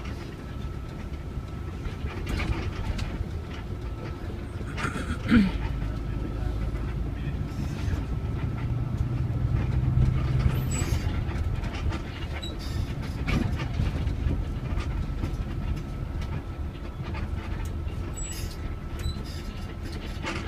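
Inside a city bus on the move: engine running with a low rumble that swells for a few seconds around the middle, along with rattles and knocks from the cabin. A short, sharp falling squeal about five seconds in is the loudest moment.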